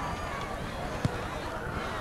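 Steady background noise at an outdoor football game, with one short thud about halfway through: the kickoff being struck.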